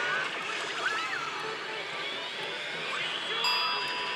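Pachinko-hall din: the steady noise of many machines, with pachislot electronic sound effects and jingles over it. A steady electronic tone comes in about three and a half seconds in.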